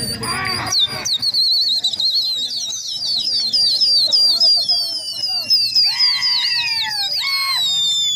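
A loud, high human whistle warbling up and down several times a second and slowly falling in pitch, the kind pigeon fanciers use to spur on a flying flock. Two short shouts cut in near the end.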